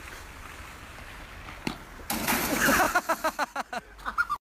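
Steady low background noise, then about halfway through a person bursts into loud laughter, a rapid run of short 'ha-ha' pulses to the end.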